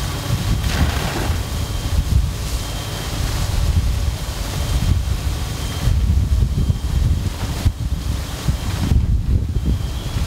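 Wind buffeting the camera microphone, a gusting low rumble, over a steady hiss.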